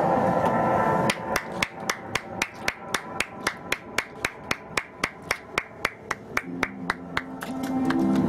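Hands clapping in an even rhythm, about four claps a second for some six seconds. Music plays at the start and comes in again near the end.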